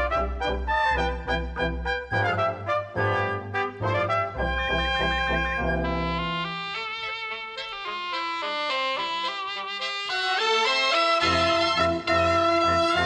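A cobla playing a sardana: tenoras and tibles with trumpets, trombone, fiscorns and double bass. Short detached chords over a deep bass line give way about six seconds in to a smoother, higher melody without the bass, and the full band with the bass comes back in about a second before the end.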